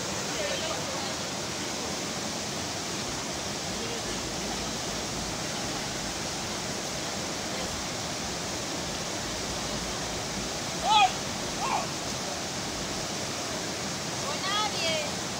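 River rapids rushing steadily over rocks, a constant white-water roar. About eleven seconds in, a person gives two short shouts over the water, the first louder.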